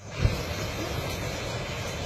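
Handheld flamethrower firing a jet of burning fuel: a low whump about a quarter second in as a fresh burst lights, then a steady rushing noise of the flame.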